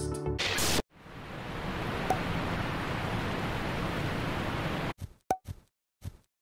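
A short whoosh, then a steady hiss that fades in and holds for about four seconds before cutting off abruptly, followed by a few brief pops.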